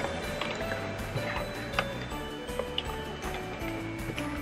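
Background music of held notes that change pitch every half second or so, with a few light clicks from handling a cardboard makeup calendar box.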